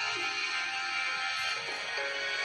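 Background music: a slow, gentle melody of held notes that step from one pitch to the next, over a soft, bright wash.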